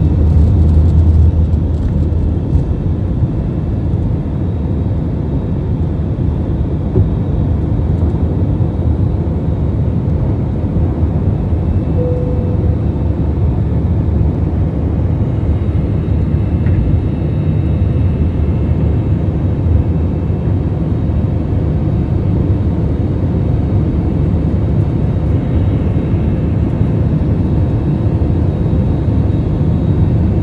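Jet airliner cabin noise heard over the wing during takeoff: the engines at takeoff thrust give a loud, steady low rumble, heaviest in the first couple of seconds on the runway, then holding steady as the plane climbs out.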